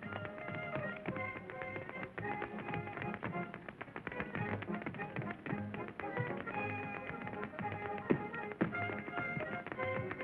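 Tap dancers' shoes striking a stage floor in quick rhythmic steps over dance-band music.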